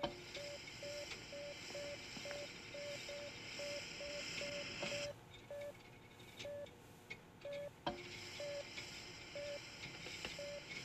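Heart monitor beeping with the patient's heartbeat after a defibrillator shock. Short, even beeps come about three times a second for five seconds, then slow to about one a second. A single click near the eight-second mark.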